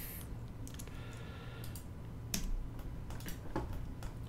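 A few scattered clicks from a computer keyboard and mouse working modelling software, with quiet room tone in between.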